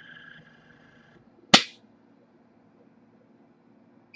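Additel ADT761 automated pressure calibrator's built-in pressure controller settling at its 100 psi test point: a steady high whine that stops about a second in, then a single sharp click about a second and a half in, over a faint low hum.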